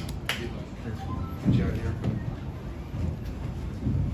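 Scattered voices in a press room, with a short spoken word about a second and a half in, over a low murmur. There are two sharp clicks near the start.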